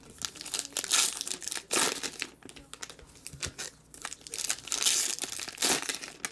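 Foil trading-card pack wrappers, Topps Fire baseball packs, crinkling as they are torn open by hand, in irregular crackles with louder bursts about a second in, near two seconds and near the end.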